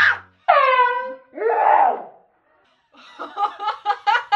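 A young woman screams twice, each cry sliding down in pitch, then lets out a breathier yell; after a short pause she bursts into laughter, about four or five quick laughs a second.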